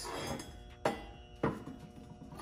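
Two sharp knocks of metal parts handled on a steel workbench, about half a second apart, over faint background music.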